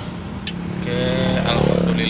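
Truck engine running at low speed, a steady low drone heard from inside the cab, with a sharp click about half a second in.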